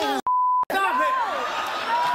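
A broadcast censor bleep: one short, steady, high beep lasting under half a second, with all other sound cut out around it, covering a word. Excited voices shouting and talking resume right after it.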